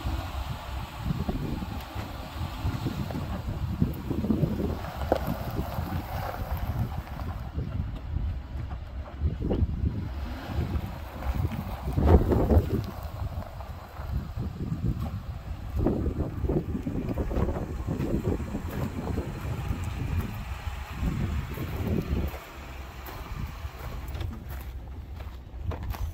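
Wind buffeting the microphone in uneven gusts, strongest about halfway through, over the 2008 Ford Escape's engine idling after a start.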